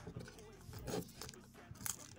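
Hands handling a paper-card retail package: faint rustling, with two sharp crackles, one about a second in and a louder one near the end.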